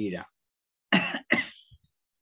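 A man coughs twice in quick succession, about a second in, two short sharp coughs.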